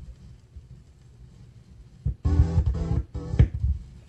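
Two short snippets of a sampled record played back as chops, while a sample-based beat is being built: the first comes about two seconds in, the second a moment later, with little sound before them.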